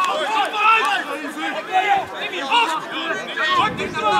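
Spectators' voices talking over one another: overlapping chatter of several men.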